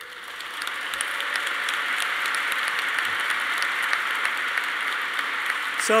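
An audience applauding, building up over the first second and then holding steady.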